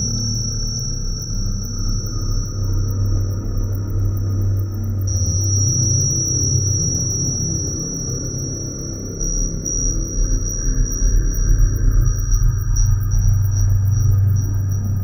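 IDM electronic music: a deep, pulsing synth bass under a steady high-pitched tone with fine ticking on top, growing louder about ten seconds in.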